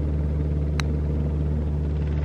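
A golf club striking the ball once, a short sharp click about a second in, over a steady low hum.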